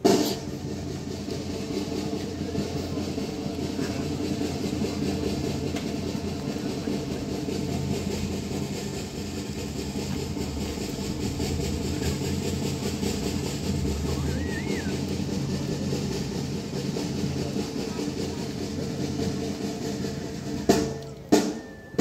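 A long, steady snare drum roll. It breaks off near the end into a few sharp, separate strikes.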